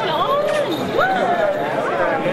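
Crowd of spectators talking and calling out, several voices overlapping, with some rising exclamations.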